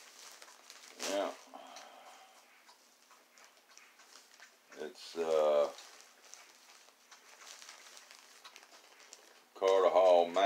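Faint crinkling of a plastic zipper bag being handled, with a brief murmur from a man's voice about a second in and a longer one about five seconds in. Speech starts near the end.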